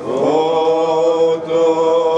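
Greek Orthodox Byzantine chant sung by several voices. It comes in right at the start after a short pause, with a note that slides up and is then held long.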